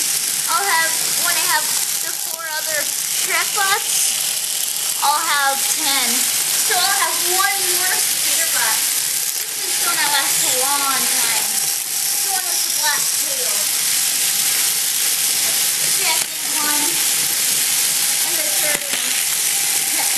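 Indistinct talking, with no clear words, over a steady loud hiss.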